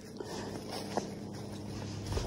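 Footsteps on a path of dry fallen leaves, with the walker breathing heavily, a little out of breath.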